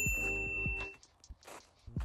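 A bright, high-pitched electronic ding that rings for about half a second, over sustained background music notes that fade out about a second in.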